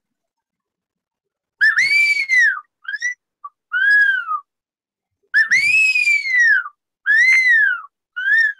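A man whistles through his fingers in imitation of an eagle's call, starting about a second and a half in. He gives two phrases, each opening with a long whistle that rises and then falls, followed by shorter falling notes.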